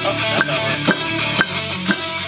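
Rock music with electric guitar and drums, starting suddenly, with a steady beat of about two drum hits a second.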